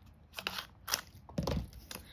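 Clear plastic nail-strip package being handled and opened: a few sharp crackles and clicks of stiff plastic, roughly half a second apart, with a duller knock near the end.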